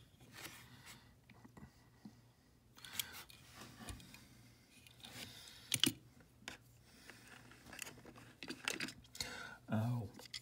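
Small die-cast model cars being handled: quiet, scattered clicks and taps of metal and plastic, with one sharp click about six seconds in as a car is set down.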